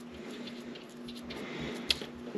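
Faint handling sounds of hands pressing and packing soft vegetable shortening around a candle in its can, with one short sharp click near the end, over a faint steady hum.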